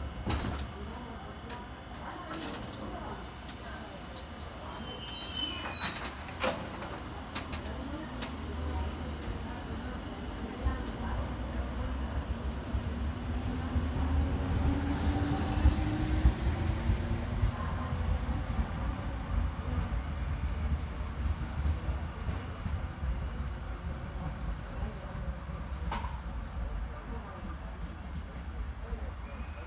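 Renfe ex-class 440 electric multiple unit pulling out of the station: a steady low rumble of wheels on the track, with a slowly rising whine from the traction motors as it gathers speed. A brief loud clatter with high squealing comes about six seconds in.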